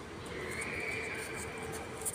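Small electric motor of an RC model submarine whining steadily as the sub runs along the surface; the whine starts about half a second in and fades near the end.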